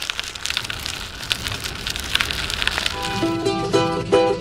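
Intro jingle: a dense crackling, rain-like sound effect that grows louder, then about three seconds in a few quick plucked-string notes begin.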